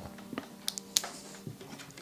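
A few small, sharp plastic clicks and ticks, the clearest two about a second in, as a small plastic ampoule of sterile water is twisted open and handled. Faint background music runs underneath.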